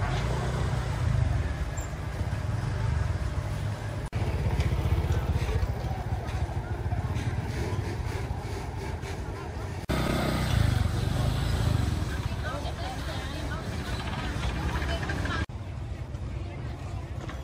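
Outdoor market ambience: people talking in the background and motorbikes running, over a steady low rumble. The sound changes abruptly at cuts about 4, 10 and 15 seconds in.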